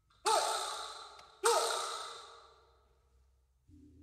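A metal percussion instrument struck twice, a little over a second apart. Each stroke gives a bright crash that dips briefly in pitch and rings out, fading over about a second and a half. A low sustained tone enters near the end.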